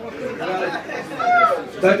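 Speech only: a man talking with crowd chatter around him, and no music playing.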